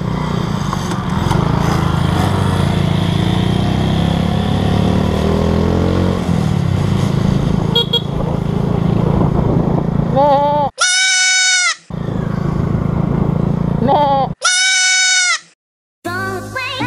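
A Suzuki Smash 115 underbone motorcycle runs along the road, its engine mixed with wind noise on a helmet camera. About eleven seconds in, a loud bleat sounds, and it comes again about three seconds later. Each lasts about a second, with the road noise cutting out beneath it.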